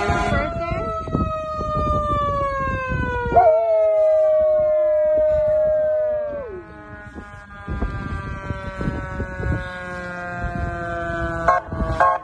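A long, siren-like wail that slides slowly down in pitch. A second held tone joins about three seconds in and drops away about three seconds later.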